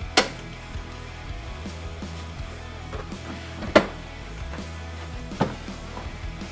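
Background guitar music with three sharp clunks from the stock driver's seat as it is unlatched and lifted out of its base. One clunk comes just as it begins, the loudest a little past halfway, and one near the end.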